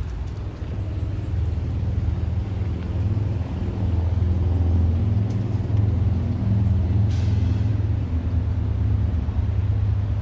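Highway traffic: a steady low engine rumble from passing heavy vehicles that grows louder about three seconds in, with a brief hiss about seven seconds in.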